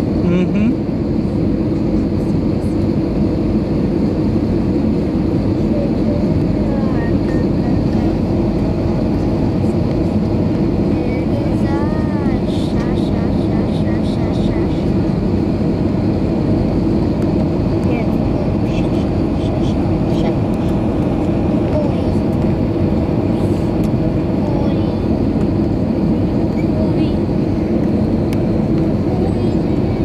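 Steady, loud cabin drone inside an Airbus A320 in flight: engine and airflow noise, strongest in the low end, with faint voices in the cabin about twelve seconds in.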